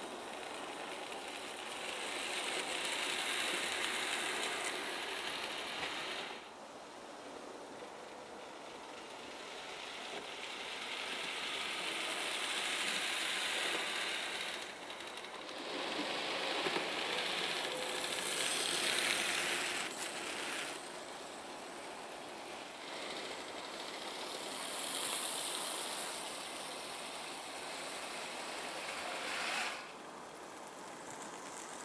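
Bachmann 009 narrow gauge Mainline Hunslet model locomotive running on the layout, hauling small skip wagons loaded with real slate: a steady rattle of tiny wheels on the track and the wagons. It grows louder and fades away several times and breaks off abruptly a few times.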